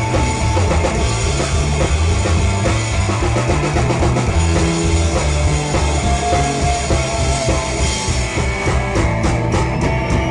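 A rhythm-and-blues rock band playing live without singing: electric guitar over a steady bass line and drum kit. A run of quick drum hits comes near the end.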